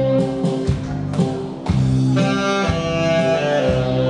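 A live band playing an instrumental break in a song between sung lines, with a steady bass line under a held melody line, a saxophone among the instruments. The music dips briefly a little under halfway through, then a new phrase comes in.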